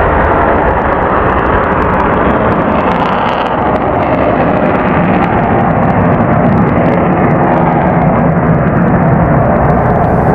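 F-15 fighter's twin Pratt & Whitney F100-PW-220 afterburning turbofans at full power as the jet climbs away, a loud steady roar with a crackling edge.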